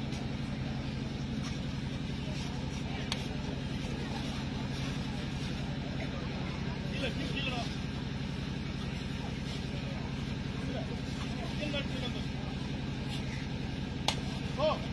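A steady low drone, like a running motor, under faint distant voices from the crowd and players.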